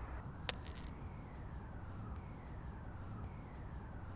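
A penny dropping onto tarmac about half a second in: one sharp, high ringing strike followed by a few quick bounces, then faint steady outdoor background noise.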